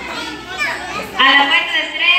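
Young children's voices and chatter in a hall, with a loud, high-pitched voice calling out about a second in.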